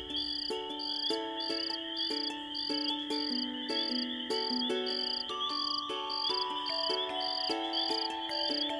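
Night-time crickets chirping in an even rhythm of about two chirps a second over a continuous high insect trill, with a gentle melody of held notes playing underneath.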